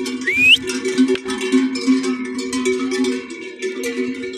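Background music of plucked acoustic guitar in a flamenco style, with a short rising tone near the start.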